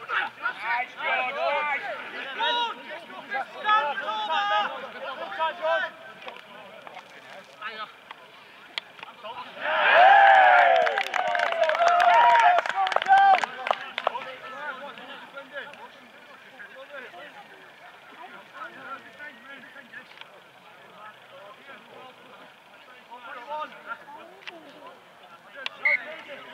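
Shouts and calls from rugby league players and touchline onlookers on an open pitch. There are a few calls early on, then a loud burst of shouting about ten seconds in, mixed with a run of short sharp knocks, and after that only scattered distant calls.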